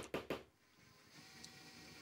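A few short sounds in the first half-second, then near silence with faint room tone.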